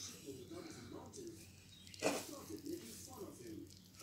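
Faint, distant speech in the background, with a brief rustle about two seconds in as a pastry sheet is rolled by hand around filling.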